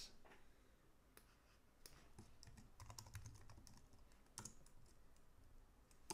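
Faint computer keyboard keystrokes: a handful of separate taps with pauses between them, one a little louder about four and a half seconds in.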